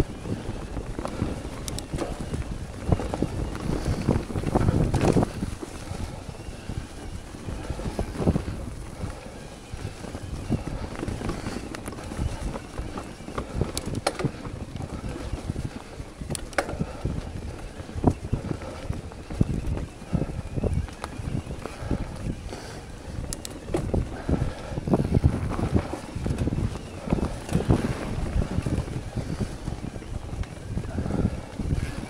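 Electric mountain bike riding over forest singletrack: wind rushing over the microphone and tyres rolling on dirt and dead leaves, with frequent sharp clicks and rattles from the bike over roots and bumps. It is loudest about four seconds in and again near the end.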